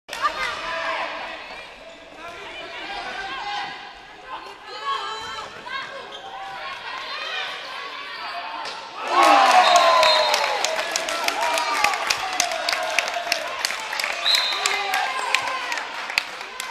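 Handball match in a sports hall: players' and spectators' voices with the ball bouncing on the floor. About nine seconds in, a loud burst of shouting and cheering breaks out, followed by rapid clapping and two short whistle blasts.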